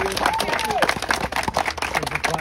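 A small group applauding, a quick, dense patter of hand claps, with a voice calling out over it in the first second.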